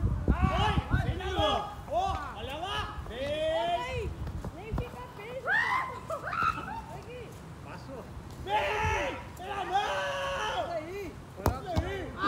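Several players shouting and calling to each other in short bursts. A couple of sharp knocks come in between, one near the middle and one near the end.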